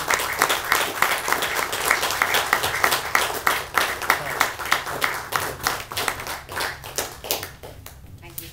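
Audience applauding, many separate hand claps at once, the clapping thinning out and dying away near the end.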